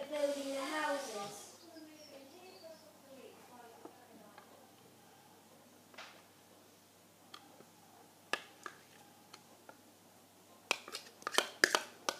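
A metal spoon ticking and tapping against a small plastic cup as thick soap mixture is scraped out into plastic ice-lolly moulds: a few scattered taps, then several in quick succession near the end.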